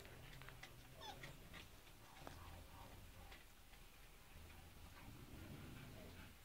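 Near silence with faint, scattered clicks of a husky gnawing raw meat on the bone, and a faint puppy squeak about a second in.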